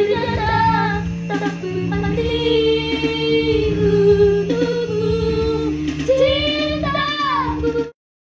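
A girl singing solo, with long held notes that waver and glide in ornamented runs, over a steady low sustained background. The sound cuts off abruptly near the end.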